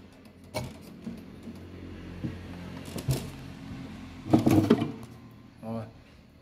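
Handling noises as a German mechanical wall clock's movement is drawn out of its wooden case: scattered clicks and knocks of metal against wood, with a louder clatter about four and a half seconds in.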